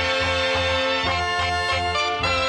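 A Catalan cobla playing a sardana. The nasal double-reed tibles and tenores carry held melody notes over trumpets, trombone and fiscorns, while the double bass keeps a steady low pulse a few times a second.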